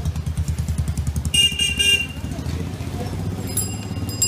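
Street traffic with a small motorcycle engine running close by, then a short electric horn beep of about half a second, a little over a second in.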